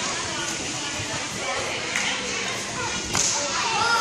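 Indistinct chatter of girls and coaches in a busy gymnastics gym, with one sharp impact about three seconds in.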